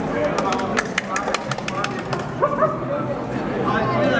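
People talking, with a quick, uneven run of about a dozen sharp clicks over the first two seconds.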